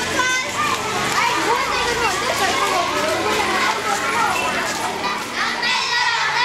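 Many children's voices chattering and calling out at once, overlapping, with no single voice standing out.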